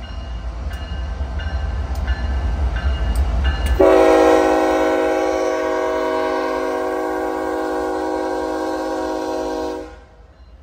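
Diesel freight locomotives rumbling louder as they approach. About four seconds in, the lead locomotive's air horn sounds one long chord of several notes, held for about six seconds, then cuts off sharply.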